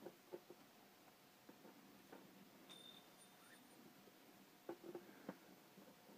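Near silence with a few faint, scattered clicks and rustles of paracord and a plastic buckle being handled. A faint thin high tone sounds for about a second near the middle.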